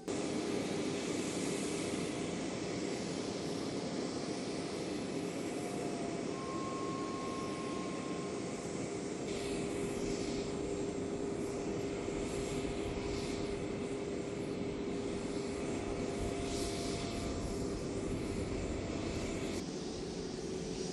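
Steady jet aircraft noise from a parked airliner: an even rumble and hiss with a constant droning hum. It begins suddenly and stays level throughout.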